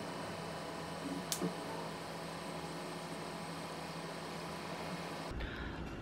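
Quiet, steady hiss of room tone, with one faint click about a second in.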